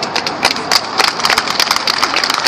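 Audience applauding with hand claps, scattered at first and growing denser about a second in.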